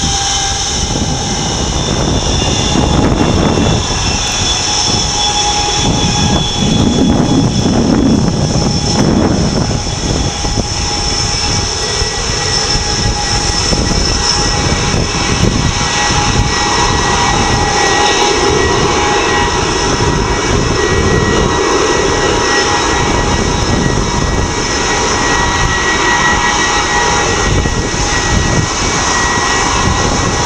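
Vickers VC10 jetliner's rear-mounted Rolls-Royce Conway jet engines running steadily as it taxis: a loud, even jet whine made of several held high tones over a rumble.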